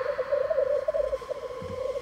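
Eerie horror sound design played back from an edit timeline: a scary-forest ambience and riser heard as a droning, wavering mid-pitched tone over a fainter steady higher tone and hiss.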